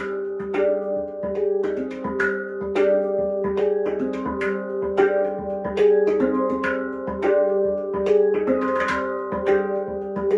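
Handpan tuned to a G Akebono scale, played with the hands: a quick, rhythmic stream of struck notes, each ringing on and overlapping the next over a sustained low note.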